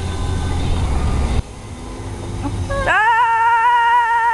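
Low car-cabin road rumble with faint talk, then, near the end, a woman's voice breaking into one long, high-pitched held note, a squeal or sung wail, steady in pitch.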